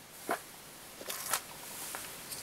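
Faint handling noises at a fly-tying vice: a short click, then a brief scratchy rustle of tying thread and feather fibres being worked on the hook.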